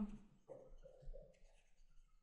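Faint scratching of a stylus writing by hand on a pen tablet, forming words in short strokes.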